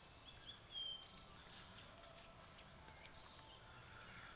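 Faint outdoor ambience with a few short, high bird chirps, the loudest a brief whistle just before a second in.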